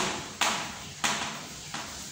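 Chalk writing on a blackboard: three sharp taps about half a second apart, each fading out in the room's echo.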